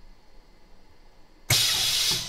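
Vacuum laminating machine letting air out at the end of its laminating cycle: faint room tone, then about one and a half seconds in a sudden, loud hiss of rushing air as the chamber is vented.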